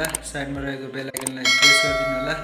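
Subscribe-button animation sound effect: a mouse click, then a bright bell ding about a second and a half in that rings on past the end. Speech sounds run underneath.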